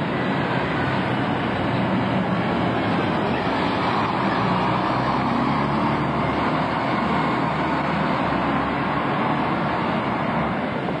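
Single-deck diesel bus driving past close by and moving away, its engine and tyre noise steady and loudest about halfway through, over general street traffic.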